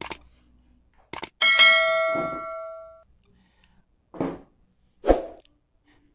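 Subscribe-button animation sound effect: a quick mouse click, then a bright bell ding that rings out for about a second and a half.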